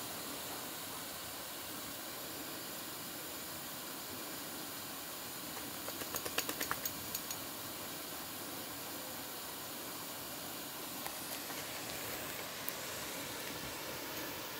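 Steady hiss of a pop-up lawn sprinkler's water jet spraying, with a short run of faint clicks about six seconds in.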